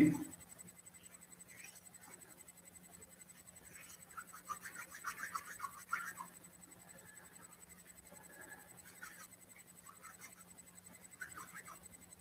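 Faint scratching of a pen writing on paper, in a few short spells, over a faint steady low hum.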